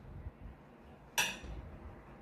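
A metal fork clinks once against a plate about a second in, after a few soft low thumps of handling at the table.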